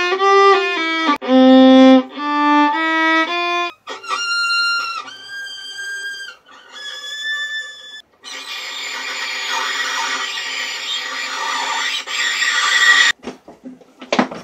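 Solo violin played unsteadily: a short run of stepped notes, then a few thin, high notes. From about eight seconds in comes a harsh, scratchy bowing noise that cuts off suddenly near the end.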